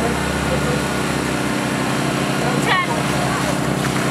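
An engine running steadily at a constant speed, a continuous even hum with no revving.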